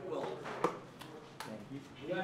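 Faint background voices of players talking, with two short sharp clicks or knocks.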